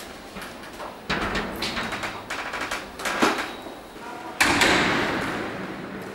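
A large sliding shelving unit rolled along its track: rattling and rolling from about a second in, a knock near three seconds, then a sudden loud bang at about four and a half seconds that dies away.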